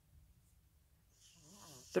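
Mostly quiet room tone, then near the end a woman's soft, noisy in-breath with a faint hum in it.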